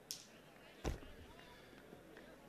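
Faint open-air cricket-ground ambience with distant voices. A short hiss comes right at the start, and a single dull thump a little under a second in.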